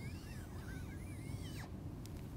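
Dry-erase marker squeaking on a whiteboard as a looping curve is drawn: a string of faint, short squeaks that rise and fall in pitch, stopping shortly before the end.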